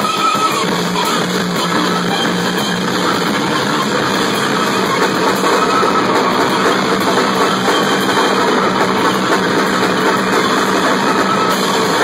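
Loud live noise-rock: a drum kit played continuously with dense cymbal and drum hits under a distorted, steady droning tone.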